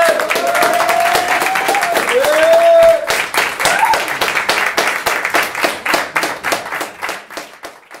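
A small audience clapping after a song ends, with long whoops of cheering in the first three seconds. The clapping thins out and fades away near the end.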